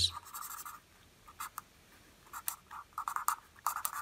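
Felt-tip pen writing on paper: short scratchy strokes in several quick bursts with brief pauses, as a unit is crossed out and rewritten.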